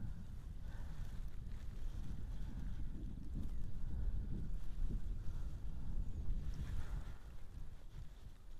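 Wind buffeting the microphone: a low, uneven rumble that swells and eases.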